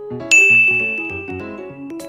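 A single bright ding sound effect about a third of a second in, ringing on as one high tone that fades slowly over more than a second and a half. Under it runs keyboard background music with a bouncy rhythm.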